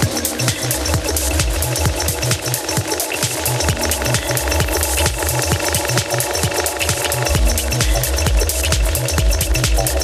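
Electronic dance music from a live DJ set: a fast, driving beat with heavy bass pulses that grow heavier about two-thirds of the way through.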